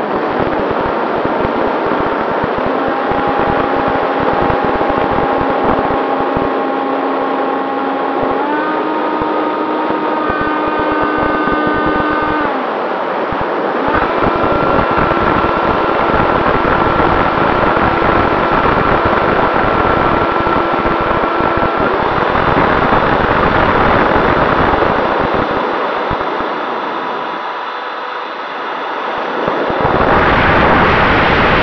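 Freewing F-86 Sabre RC jet's electric ducted fan whining over heavy wind rush and buffeting on its onboard camera's microphone in flight. The fan tone steps up in pitch about eight seconds in, cuts out briefly near thirteen seconds, then holds a higher note until about twenty-two seconds; the wind noise dips near the end.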